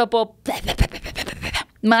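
Scratchy rustling and a run of small clicks close to a microphone for about a second, with a dull low bump in the middle, between snatches of speech.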